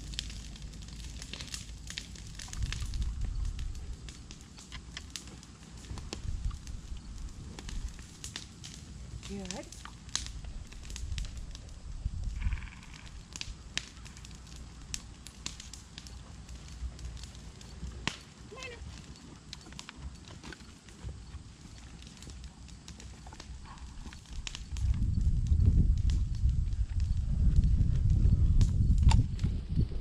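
Brush-pile fire crackling with scattered sharp pops, over a low rumble that becomes much louder about five seconds before the end.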